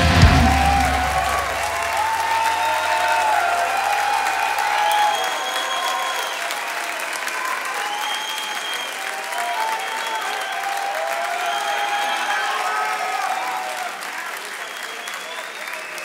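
Concert audience applauding and cheering, with shouted voices rising over the clapping. The band's last low note fades out in the first few seconds.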